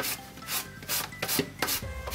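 A sanding sponge rasps in quick, repeated back-and-forth strokes along the edge of a decoupaged cardboard-and-cork coaster, sanding away the overhanging napkin paper.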